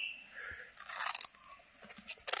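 Scissors cutting across a printed ribbon: a few quiet crunchy snips in the first second or so, and a faint one near the end.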